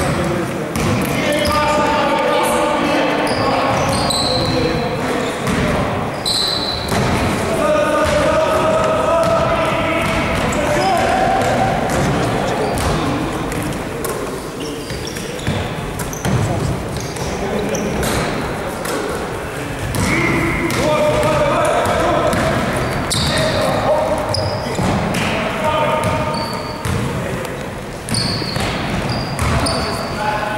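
Basketball bouncing on a sports-hall floor as players dribble and move during a game, with repeated sharp bounces among players' voices and shouts echoing in the hall.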